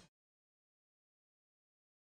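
Digital silence: the sound of a live band fades out in the first instant and then drops to nothing.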